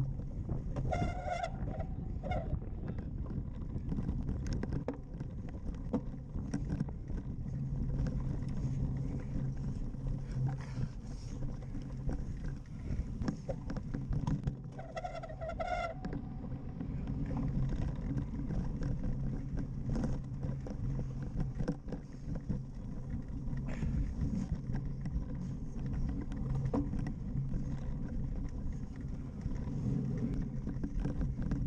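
A cyclocross bike ridden fast over rough grass, heard from an onboard camera: a steady low rumble of tyre and frame vibration mixed with wind buffeting the microphone. Two short high-pitched tones cut in, about a second in and again around fifteen seconds.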